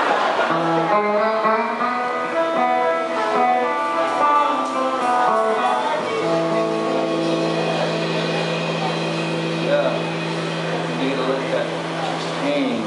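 Electric guitar picking a slow melody of single ringing notes, then holding one long sustained note from about six seconds in.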